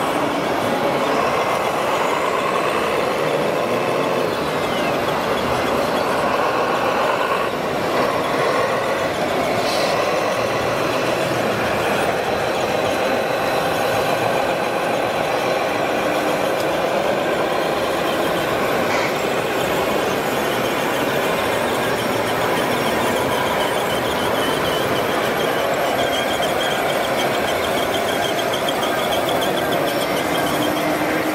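Radio-controlled model trucks and machines running on their electric drives, making a steady whine of motors and gearboxes whose pitch wavers up and down with speed.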